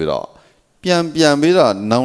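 Speech only: a man talking into a handheld microphone, with a short pause about half a second in.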